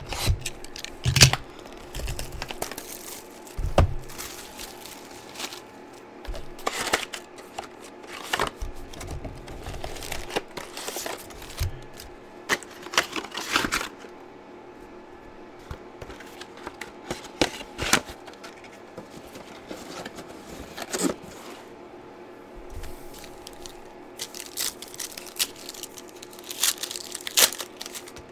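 A trading-card box and its foil card packs being opened by hand: irregular crinkling, tearing and crackling of the wrappers, with quieter spells in between.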